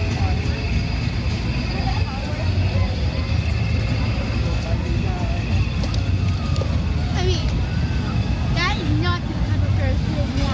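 Outdoor fairground ambience: a steady low rumble under faint chatter of people nearby, with a few short high-pitched calls about seven and nine seconds in.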